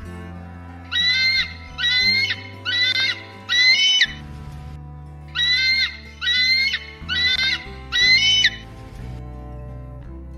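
An eagle calling: high-pitched, half-second cries, four in a row, then after a pause another identical four, over steady background music.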